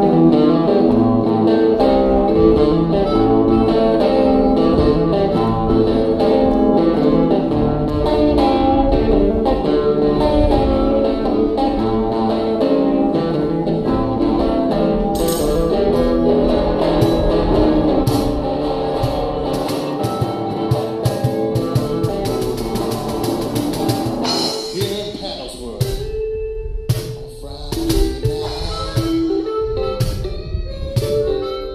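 Live band jamming a 12-bar blues: electric guitar over a drum kit. Near the end the playing thins out and gets a little quieter.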